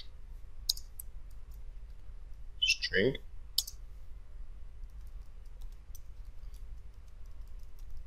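Computer keyboard typing: scattered light key clicks. A short voiced murmur breaks in about three seconds in.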